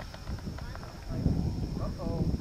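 Short, brief vocal sounds from people, possibly distant calls, over an uneven low rumble that gets louder about a second in.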